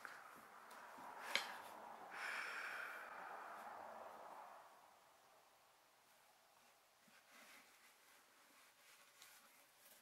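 A single sharp click of a wooden part being handled, then a long breathy sigh that fades away, followed by faint small taps of parts being moved on the bedspread.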